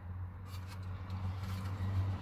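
Faint rubbing and a few light clicks of a plastic interior door pull handle being handled against a van's door trim panel, over a steady low hum.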